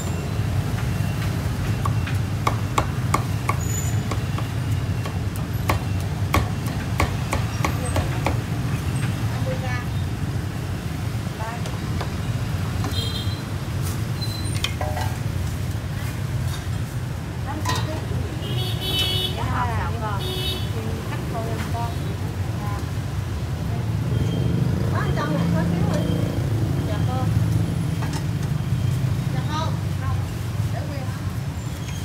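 A cleaver chopping crackling-skinned roast pork on a round wooden chopping block: a run of quick, sharp knocks, thickest in the first ten seconds. Under it runs a steady low rumble, with background voices.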